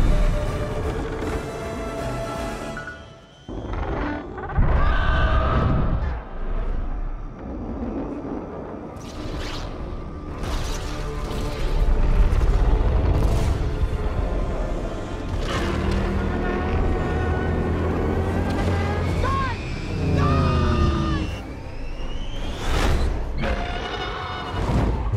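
Film score music over heavy booms and low rumbling, with sudden hits through the passage and a rising whine near the end.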